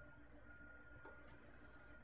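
Near silence: room tone with a faint steady tone and low hum.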